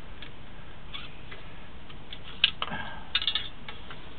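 Sharp clicks and knocks from a sewer inspection camera and its push cable being worked in a drain pipe. The loudest is a single click about halfway through, followed by a quick cluster of clicks about a second later.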